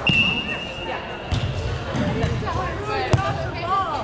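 A whistle sounds one steady, high note for about a second, signalling the start of a beach volleyball rally; the ball is then struck by hand twice, about a second and a quarter in and again around three seconds in, with players' voices calling out in between.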